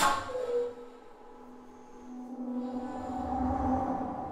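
Bass flute with live electronics: a sharp, loud attack at the start that rings away within about a second, then a low sustained note that swells over the last two seconds.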